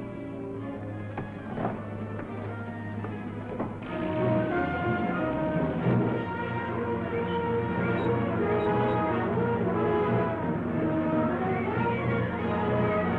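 Orchestral film score with brass prominent, swelling louder and fuller about four seconds in.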